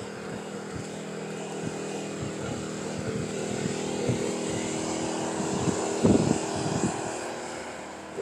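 A steady engine drone with several held tones, swelling to its loudest about six seconds in and then fading, as of a motor passing by. A few short knocks sound near the loudest point.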